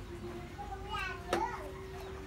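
Children's voices in the background, with one brief high-pitched call about a second in, over a faint steady hum.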